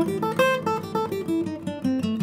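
Vintage Martin acoustic guitar playing a quick improvised run of single notes from the A minor pentatonic scale, with a blues note slipped in, turning it toward the A blues scale.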